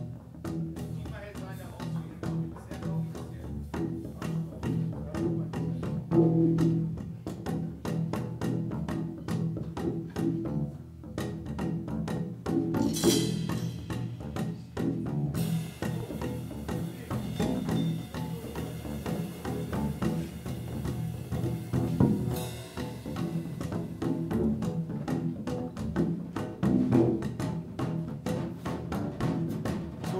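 Plucked double bass playing a low, repeating groove over a steady, busy drum and percussion pattern.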